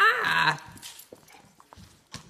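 A dog gives one short vocal call, about half a second long, right at the start, followed by faint clicks and rustles.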